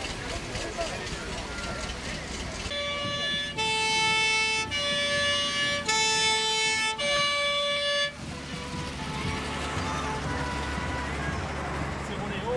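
French fire engine's two-tone horn sounding the high-low 'pin-pon' call: five notes alternating between a higher and a lower pitch, about a second each, starting about three seconds in and stopping about eight seconds in.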